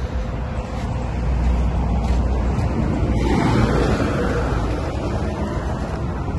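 Road traffic noise: a steady low rumble of vehicles, swelling as one passes around the middle.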